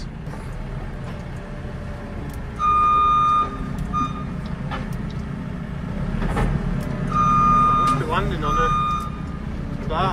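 JCB TM telescopic wheeled loader running, heard from the cab, its reversing alarm beeping in two spells, the first about three seconds in and the second about seven seconds in, as the machine backs up.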